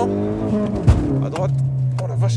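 Ford Focus ST mk3's 2.0 EcoBoost turbo four-cylinder heard from inside the cabin under hard acceleration. About a second in, the revs drop sharply with a single loud thump, then the engine pulls again with rising revs.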